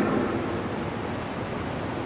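A pause in amplified speech: steady background noise of a large hall heard through a public-address microphone. The echo of the last word fades away over the first half-second.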